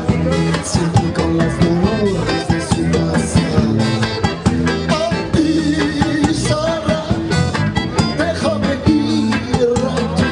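Live band playing an upbeat Latin-flavoured song on drum kit and guitar, with a man singing into a microphone.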